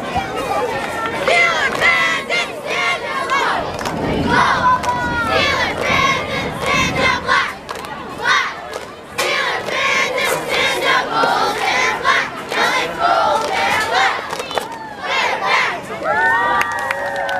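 Youth cheerleading squad shouting a cheer together, many high voices calling phrase after phrase with short breaks between.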